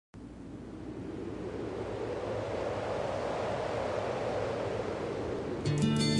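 A steady rushing noise, like wind or surf, fades in and swells slowly. Near the end, strummed acoustic guitar music comes in and is louder.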